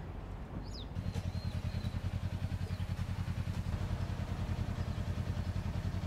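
A vehicle engine idling with a low, rapid, even throb that starts about a second in, with a few bird chirps above it.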